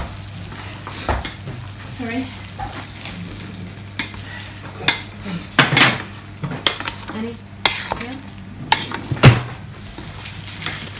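A utensil stirring in a stainless steel pot on a gas hob, with irregular knocks and scrapes against the pot, over a steady low hum.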